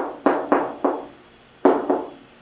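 Chalk knocking and scraping on a chalkboard as digits are written: about six sharp strokes with short tails, four in the first second and two more near the end.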